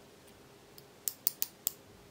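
Ratchet stop on the thimble of a Shahe 25–50 mm digital micrometer clicking: a quick run of four or five sharp clicks about a second in, as the spindle seats on a calibration pin at measuring pressure.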